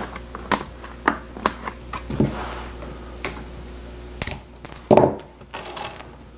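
Staples being pried out of the wooden board of a weight-bench pad with a staple puller: a string of short, sharp clicks, with a louder knock about five seconds in.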